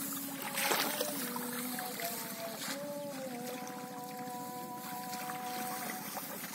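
Floodwater sloshing and splashing as people wade through a flooded rice paddy, cutting and pulling up the submerged rice stalks by hand. A steady droning tone hangs behind it and shifts pitch a few times.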